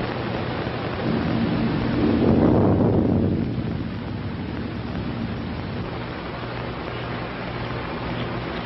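A low rumble that swells about a second in and fades out by about four seconds, over the steady hiss of an old film soundtrack.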